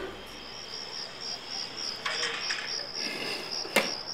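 Hot pasta water poured from a cooking pot through a metal strainer, in uneven gushes, with one sharp knock of metal near the end. A high chirping pulse of several beats a second runs under it.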